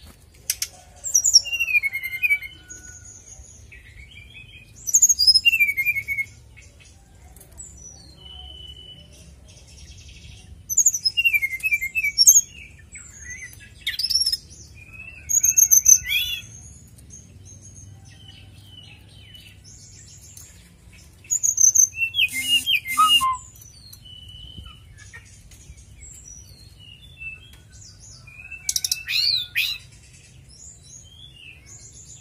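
Brown-chested jungle flycatcher (sikatan rimba dada coklat) singing in short bursts of high, quick whistled notes that glide up and down, about seven phrases with pauses of a few seconds between them.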